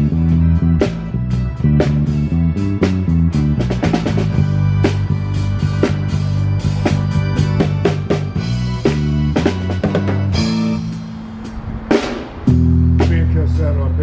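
A small live band playing a groove. A drum kit with bass drum, snare and rimshots drives it over a bass line, with mallets struck on a metal-bar keyboard and a guitar. The band drops back for a moment about three-quarters of the way through, then comes back in full.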